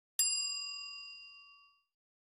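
A single bright bell-like ding, a notification-bell sound effect, struck once and ringing away over about a second and a half.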